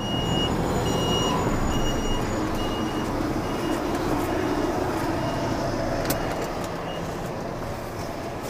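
A vehicle reversing alarm beeping about once every three-quarters of a second, growing fainter and stopping near the end, over the steady rumble of a diesel engine running.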